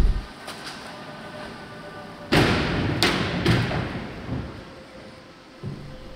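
A faint steady tone, then a loud thud about two seconds in that dies away over most of a second. Two sharper knocks follow about half a second apart.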